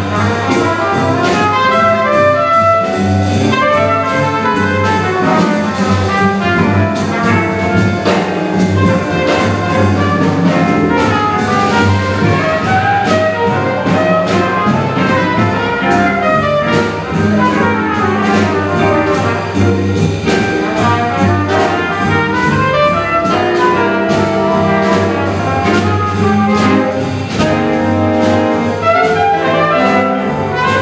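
Live jazz nonet playing, with the trumpet prominent over saxophones, trombone, upright bass, piano and drums; the horns play together as a section by the end. Drum and cymbal strokes keep time throughout.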